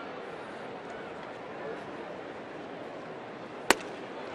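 Steady murmur of a ballpark crowd, then about three and a half seconds in a single sharp pop as the pitch smacks into the catcher's mitt.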